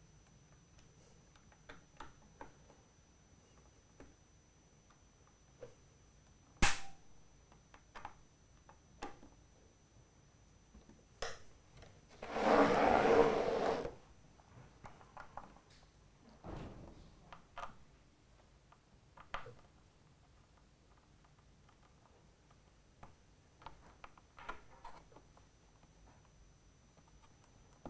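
Sparse small clicks and handling knocks as screws are tightened on the acrylic frame of a Turnigy Fabrikator 3D printer. There is one sharp click about six and a half seconds in and a rustling noise of about a second and a half near the middle.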